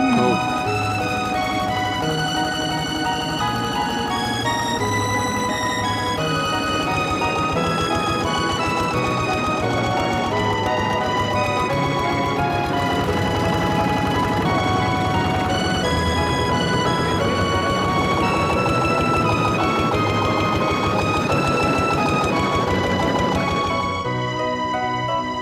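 Instrumental background music with held notes over a bass line, laid over a travel montage.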